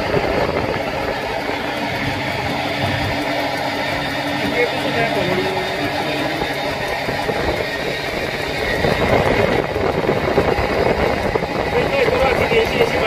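Stainless-steel centrifugal honey extractor spinning steadily, its drum and drive running with a constant whir. It grows a little louder in the last few seconds.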